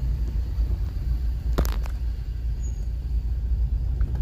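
Steady low rumble of a car driving, heard from inside the cabin, with two short clicks about a second and a half in.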